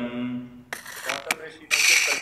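A man's voice chanting a Sanskrit verse, ending about half a second in. It is followed by two short, loud, harsh bursts of hissing noise, about a second apart.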